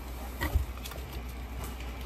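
A few faint clicks and a small knock from hands handling small hardware over a cardboard box, with a low steady hum underneath.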